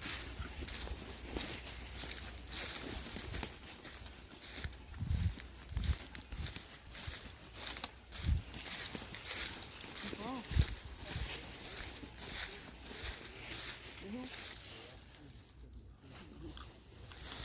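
Footsteps crunching and rustling through dry fallen leaves as several people walk, with a few low thumps and a couple of brief voice sounds.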